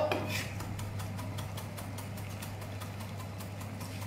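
Chef's knife mincing parsley on a cutting board: a quick, even run of light taps, about five a second, over a steady low hum.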